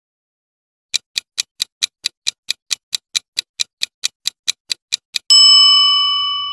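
Countdown-timer sound effect: a clock ticking evenly, about four to five ticks a second, starting about a second in, then a bell ding near the end that rings on and fades.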